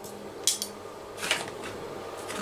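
Two short, light clinks of a metal spoon against a stainless steel saucepan and kitchenware, a bit under a second apart, the second slightly longer.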